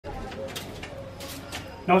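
A dove cooing softly in the background, low and wavering, with a few short high chirps from other birds.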